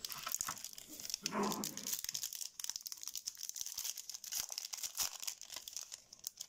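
Clear plastic packaging crinkling under the hands: a dense, continuous run of small crackles as trading-card packaging is handled and opened.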